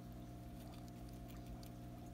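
A hamster chewing a piece of plum: faint, quick, irregular clicks and nibbling, over a steady low electrical hum.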